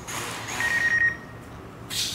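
A single steady electronic beep from a camera drone, lasting about half a second, over a hiss that fills the first second and returns briefly near the end.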